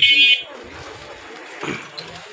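A vehicle's electric horn gives one short, loud, buzzy beep at the start, lasting about a third of a second.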